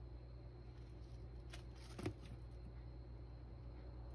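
Kitten scuffling in clay cat litter in a plastic litter tray, with a single sharp thump about two seconds in as it jumps out onto the tile floor, over a low steady hum.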